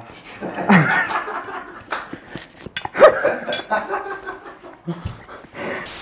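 Men laughing in scattered outbursts, with a few sharp clinks of cutlery against dishes.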